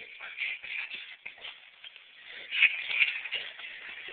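Rustling and shuffling of clothes and bedding as people move about close to the microphone, loudest about two and a half seconds in.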